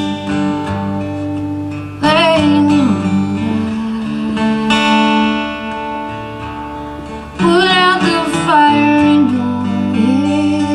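Live folk song: a strummed acoustic guitar with a woman's voice singing long, wavering held notes, without clear words. The voice comes in about two seconds in, again around the middle, and once more near the end.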